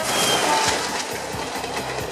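Mumbai suburban electric local train at a station platform, a steady noisy running sound with a few faint brief tones.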